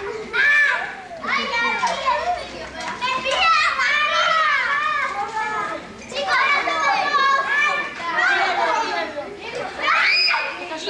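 A crowd of children shouting and calling out all at once in a dense, high-pitched din, dipping briefly about six seconds in.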